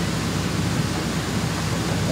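Steady rushing noise of wind and sea on the deck of a shrimp cutter under way, over the low, even hum of the boat's engine.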